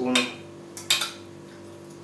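A spoon scraping spent lavender out of a copper distiller column, with sharp clinks of the spoon against the copper, the loudest about a second in.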